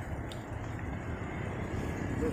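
Steady low outdoor rumble with no distinct events standing out.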